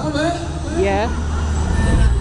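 Riders on a swinging fairground thrill ride shouting and whooping in short rising and falling cries, over a steady low rumble.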